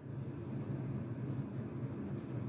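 A steady low hum of room background noise, with no distinct knocks or clicks.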